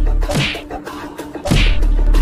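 Dubbed fight sound effects over background music with a steady beat: a swish about half a second in, then a louder swish and hit with a deep falling boom about a second and a half in.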